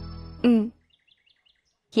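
Background music dying away, then a brief voice with a falling pitch about half a second in. A lull follows, with a few faint bird chirps, before speech begins at the end.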